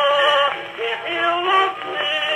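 Edison Gold Moulded wax cylinder from 1905 playing on an Edison Home phonograph through its horn: a tenor singing held notes with orchestral accompaniment, in the thin, narrow sound of an acoustic recording.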